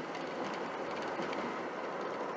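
Steady in-cab running noise of a 1995 Ford Ranger pickup at about 36 mph: its swapped-in 2.5-litre four-cylinder engine turning about 2,500 rpm on light throttle, mixed with road and tyre noise.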